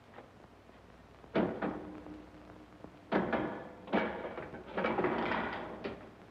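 Clunks of a car being handled: four or five heavy knocks a second or so apart, the last drawn out with a scrape, like the doors or bonnet of a car being worked at a filling station.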